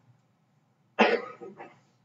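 A person coughing: one sharp cough about a second in, followed by a smaller second one.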